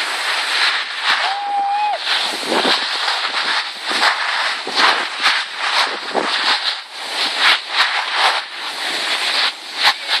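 Skis scraping and hissing over packed, cut-up snow with wind rushing on the phone's microphone, in uneven surges as the skier turns. A brief held high-pitched call sounds just over a second in.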